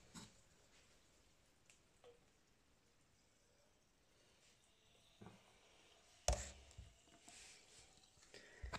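Near silence for several seconds, then a soft knock and, about a second later, a sharper knock with faint rustling after it: handling noise from the camera and bottle on a table.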